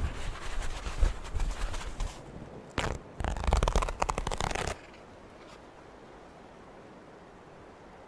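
Paper towel being unrolled from its roll with crinkling and rustling, then a sheet torn off, a louder crackling tear lasting a second and a half about three seconds in. After that only a faint steady hiss remains.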